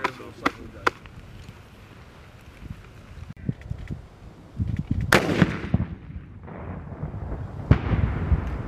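Carl Gustaf 84 mm recoilless rifle live fire on a range: a loud blast with a rumbling tail about five seconds in, then a sharp bang near the end as the round bursts on the target.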